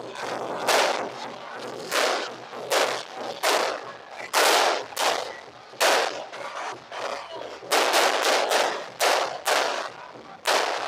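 Aerial fireworks bursting overhead: a series of loud, sharp bangs, each with a short fading tail. They come about every half-second to a second, with a quick run of four bangs close together near the end.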